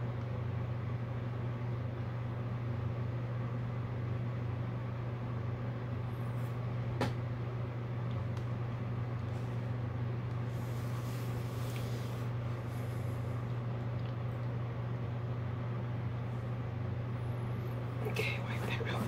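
A steady low machine hum, with a single faint click about seven seconds in.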